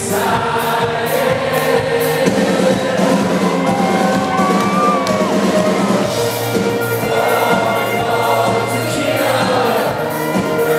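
Live rock band playing, loud and continuous, with held notes and singing over them.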